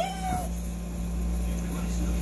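A woman's high, drawn-out whimper trailing off in the first half second, a pained reaction to the burn of spicy noodles, then only a steady low hum.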